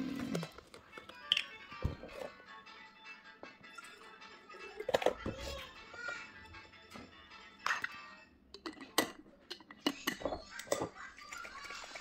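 Faint background music and voices, with scattered clicks and knocks from milk cartons and a plastic bottle being handled and their caps worked.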